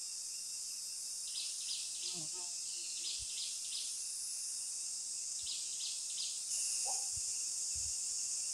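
Tropical forest ambience: a steady high insect drone, with short high chirps repeating in groups of three or four every second or two. A few faint, lower calls come through about two seconds in and again near the end, which are from a hornbill.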